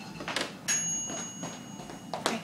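A couple of sharp knocks and a clunk about half a second in, then a thin, steady high-pitched whine for over a second.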